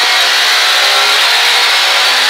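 Ford Escort Mk2 rally car's engine pulling hard under load, heard from inside the stripped cabin, its pitch holding nearly level over a steady rush of road and tyre noise.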